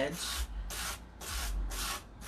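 120-grit sanding block rubbing over the paper-covered edge of a tabletop in about four short strokes, sanding through the decoupaged wrapping paper to trim it flush at the edge.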